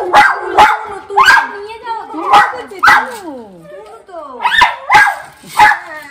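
Small white dog barking repeatedly: a run of short, sharp barks, each dropping in pitch, with a pause of about a second midway before a second burst of three.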